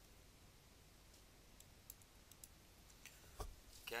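Near silence with a few faint scattered clicks and one louder click about three and a half seconds in. A man says "okay" at the very end.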